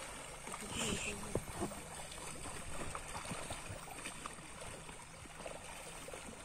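Water splashing and sloshing as a crowd of mugger crocodiles jostle at the surface, with faint voices in the background.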